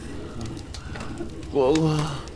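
A man's voice calling "gūgū" ("Aunt"), trembling with its pitch wavering, about one and a half seconds in, over a low steady hum.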